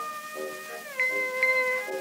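Small orchestra on an early acoustic recording, playing an instrumental passage. A held high melody note slides down in pitch over lower accompanying notes, then bright bell notes strike about one and one and a half seconds in.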